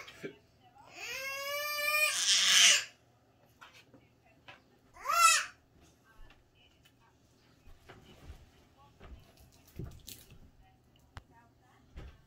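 A young child crying out twice: a long, loud, high wail that rises and falls about a second in, then a shorter high cry about five seconds in.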